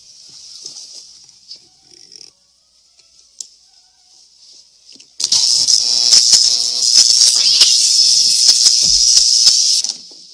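Electrical shorting of a chewed Christmas-light cord: a sudden loud, crackling, buzzing sizzle dense with sharp snaps starts about halfway through, holds for almost five seconds and cuts off abruptly as the power dies. Before it there is only a faint hiss and a few small clicks.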